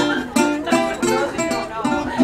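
Acoustic guitar played solo, a run of plucked melody notes over bass notes at about three notes a second, leading into a song.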